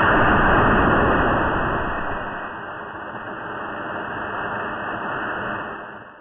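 Fuel vapour igniting and burning inside a 2-litre plastic bottle whoosh rocket, heard slowed down. It is a long, dull rush of noise, loudest as it lights and fading slowly over about six seconds.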